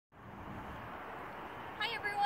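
Steady outdoor background noise, an even hiss with no distinct events. Near the end a woman's voice begins.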